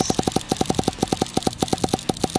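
Tokyo Marui SOCOM MK23 non-blowback gas pistol firing a rapid, even string of shots, about a dozen sharp pops a second, as the magazine is shot down toward 150 rounds in a gas-consumption test.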